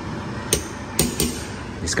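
Metal spoon clinking against the side of a stainless-steel saucepan of soup: three sharp clinks, the last two close together, over a steady hiss.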